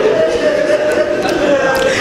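Congregation of mourners weeping aloud over a murmur of crying voices, with one drawn-out wail slowly falling in pitch.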